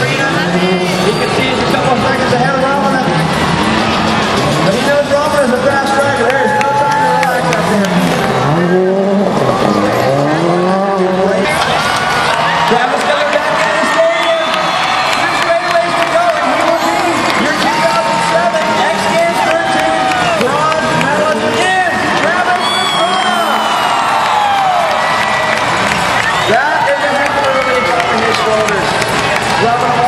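Subaru Impreza rally car's engine revving hard, its pitch climbing and dropping again and again through gear changes as the car is driven flat out around a dirt course.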